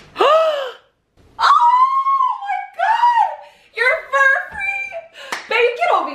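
A woman shrieking in a high voice: a short rising-and-falling squeal, then a longer held shriek, followed by excited, choppy shouted exclamations.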